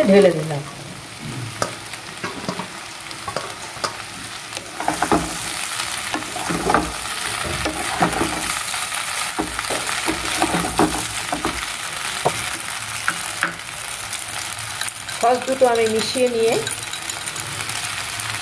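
Boiled pasta being stir-fried in a frying pan with scrambled egg and vegetables: a steady sizzle with the repeated scrape of a spatula turning it over. The sizzle gets louder about five seconds in.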